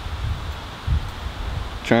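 Outdoor background noise: an uneven low rumble of wind on the microphone with a light rustle. A spoken word begins near the end.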